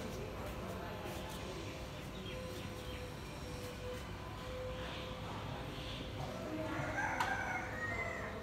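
Steady background noise with a faint low hum, and a drawn-out animal call lasting about a second and a half near the end.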